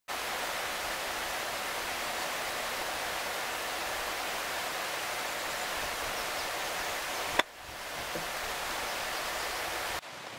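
Steady wind noise buffeting the microphone, then a single sharp click about seven seconds in: a wedge striking a golf ball off a practice mat.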